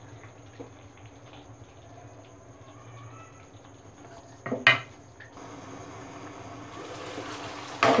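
Chicken in thick yogurt masala simmering in a nonstick kadai, with a quiet sizzle and bubbling. About halfway through a utensil knocks once against the pan, after which the sizzle grows slowly louder: the yogurt's water has cooked off and the masala is starting to fry.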